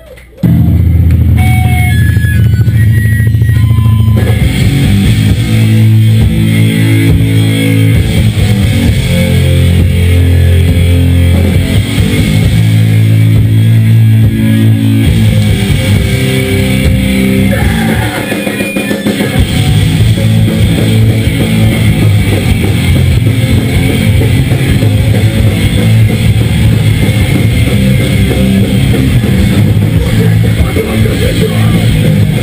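Hardcore band playing live at full volume: distorted electric guitars, bass guitar and drum kit, kicking in suddenly about half a second in.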